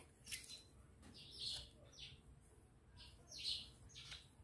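Newborn Siberian husky puppy squeaking while handled: four or five short, high squeaks, each falling in pitch, about one a second.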